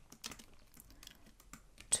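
Computer keyboard typing: several keystrokes at an uneven pace, the loudest just before the end.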